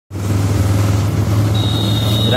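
Steady low engine hum of a road vehicle in motion with a noisy background. A thin, steady high-pitched tone joins near the end.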